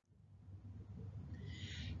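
A quiet pause filled with a faint low electrical hum from the recording. A faint, brief higher sound comes in near the end.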